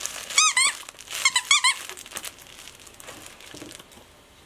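Squeaker inside a plush koala dog toy squeaking as a German Shepherd bites at it: two quick squeaks about half a second in, then a run of three or four more around a second and a half.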